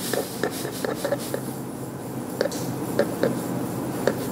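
Irregular light clicks over a soft rubbing noise, from a plastic measuring spoon knocking against a wooden spoon and a cast iron skillet as a teaspoon of baking soda is shaken out over flour.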